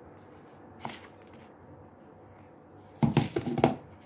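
A wooden spoon working stiff cookie dough in a plastic bowl: faint at first with a single click about a second in, then a quick cluster of knocks and scrapes against the bowl in the last second.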